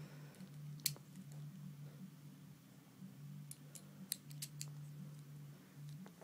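Plastic Lego bricks clicking as they are handled and fitted together: one sharp click about a second in, then a quick run of small clicks a little past halfway, over a faint low hum.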